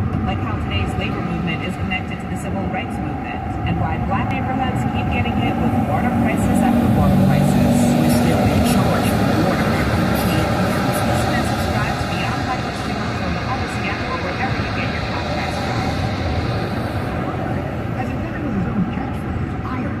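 Talk from a car radio, heard inside the cabin of a car travelling at freeway speed, over steady road and engine noise.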